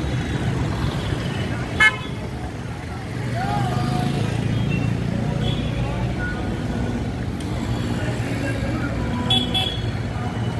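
City street traffic of motorcycles, scooters and cars passing with engines running. A short, loud horn honk comes about two seconds in, and two quick honks come near the end.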